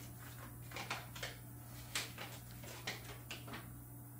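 Faint rustling and light crinkling of a paper instruction manual being handled, with scattered small clicks over a steady low hum.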